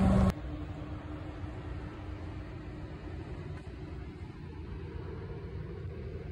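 Loud outdoor noise cut off abruptly just after the start, followed by a steady low rumble with a faint hum that fades after about two seconds.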